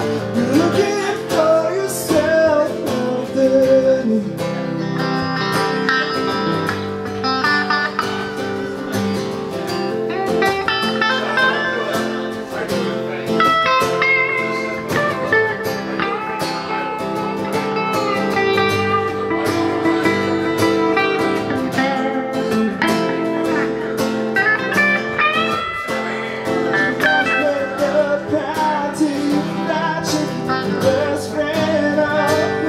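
Live music from an acoustic guitar and an electric guitar playing together, with a man singing over them.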